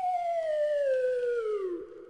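A comic sound effect: one long pitched tone sliding steadily downward for about two seconds, then fading to a faint steady hum.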